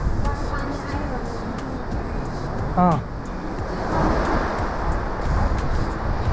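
Sea surf washing through a rocky gorge, with wind rumbling on the microphone; the surf swells about four seconds in.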